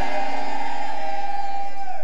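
A sustained chord held steady on a keyboard, its tones flat and unwavering, fading away near the end.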